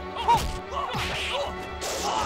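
Dubbed martial-arts fight sound effects: swishing whooshes of swung arms and legs and sharp smacking hits, several in quick succession, the loudest about a third of a second in. Background music plays underneath.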